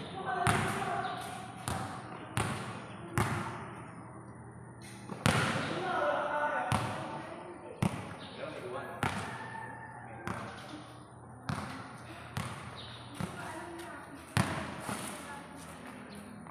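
A basketball bouncing on a concrete court: single sharp thuds, irregularly spaced about a second apart, from dribbling and play.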